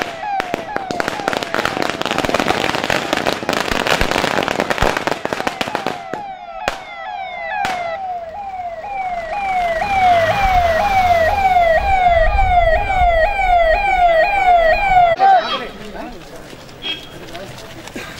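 An escort vehicle's electronic siren sounds in quick rising sweeps, about two a second, and cuts off about three seconds before the end. Under it, a string of firecrackers crackles densely for the first six seconds, followed by two separate sharp bangs.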